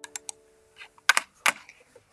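A handful of sharp clicks on a computer keyboard: three quick ones right at the start, then two or three more about a second in. Under the first clicks, the last held notes of an advertisement's music fade away.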